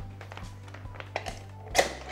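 Soft clicks and fabric rustle from a Jinbei KC umbrella-style strip softbox being pushed open at its central hub, over background music. One loud snap about 1.8 seconds in as the softbox pops open and locks.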